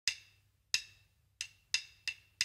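Count-in before a swing backing track at 180 BPM: short, sharp wood-block-like percussion clicks. Two come slowly, on every other beat, then two more on each beat, in the classic "one … two … one, two, three, four" count.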